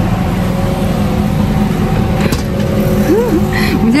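Steady rumble of road and engine noise inside a moving car, with a low steady hum. A woman's voice and a laugh come in near the end.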